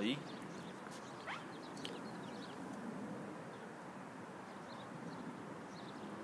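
Steady, quiet background noise with no distinct source, and a faint short rising chirp about a second in.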